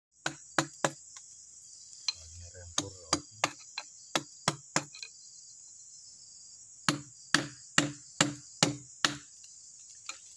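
Wooden mallet striking a steel chisel that cuts into an ironwood (ulin) log: sharp knocks, about two to three a second, in two runs with a pause of about two seconds in the middle.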